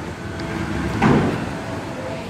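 Bowling-alley din: a steady rumble, with one clatter about a second in as the bowling ball hits the pins.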